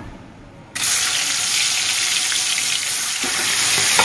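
Pieces of aar fish slid into hot oil in a kadai, starting a sudden, loud, steady sizzle about a second in: frying has begun.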